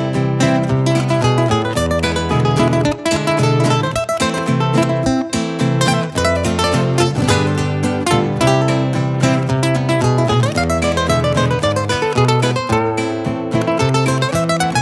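Two nylon-string acoustic guitars play a song's instrumental introduction. A requinto picks a quick, running melodic lead over the second guitar's bass notes and chords.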